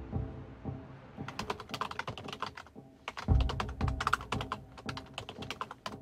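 Typing on a computer keyboard: quick, irregular key clicks starting about a second in. Background music runs underneath, with a deep low boom a little past the middle.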